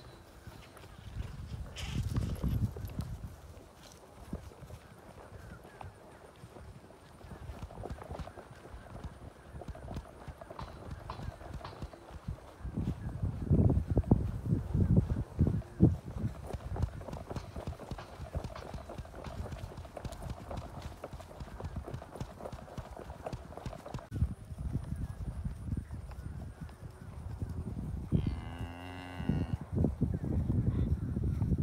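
Hoofbeats of horses walking, loudest about halfway through, and one long moo from cattle near the end.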